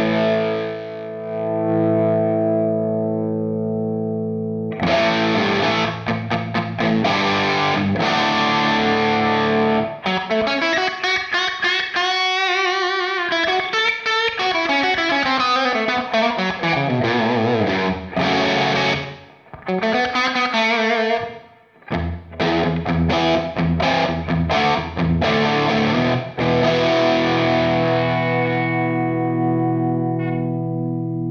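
Electric guitar with an overdriven tone from a Hudson Broadcast germanium preamp pedal into the clean channel of an Orange Rockerverb amp. A held chord rings for the first few seconds, then picked chords and fast single-note runs, with two brief stops in the middle, and a held chord rings out near the end.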